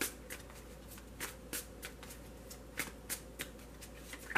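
A tarot deck being shuffled by hand: about ten short, irregular clicks as the cards slap against one another.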